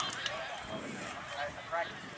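Faint, distant shouts and calls from players and sideline spectators at an outdoor rugby match, over an open-air background hiss.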